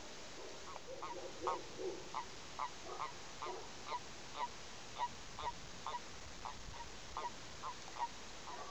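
Male common toads (Bufo bufo) calling in the breeding season: a steady run of short, evenly spaced calls, about two to three a second, starting about a second in, with softer, lower calls from other toads in the first couple of seconds.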